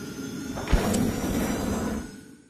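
Outro logo sting: a sudden swoosh with a deep hit about three-quarters of a second in, then a held, swelling sound that carries on to the end.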